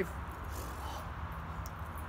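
Outdoor background noise: a low steady rumble with faint distant voices and no distinct events.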